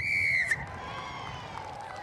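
Referee's pea whistle blown once, a single shrill blast of about half a second, signalling the award of a try. Low background noise follows.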